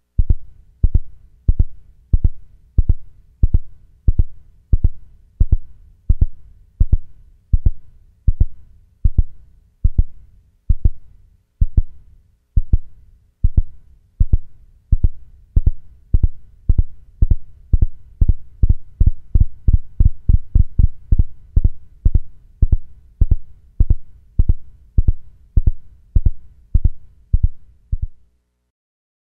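Minimoog synthesizer playing the 'Heartbeat' patch: a low, pulsing thump repeating evenly about one and a half times a second. The pulses come faster for a few seconds past the middle, then settle back.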